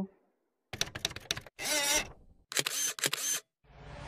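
Camera shutter sound effects: quick clicks in three short bursts.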